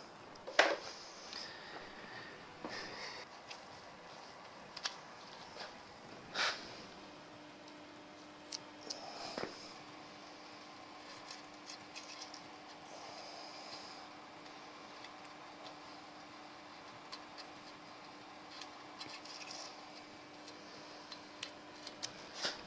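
Faint scattered clicks, rubs and rustles of hands working on metal parts, with a faint steady hum coming in about seven seconds in.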